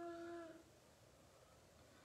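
A woman humming one steady held note that stops about half a second in, followed by near silence: room tone.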